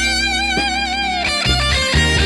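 Electric guitar solo on a soul-funk record played on a turntable: a held note with wide vibrato that bends down about two-thirds of the way through, over a steady bass line.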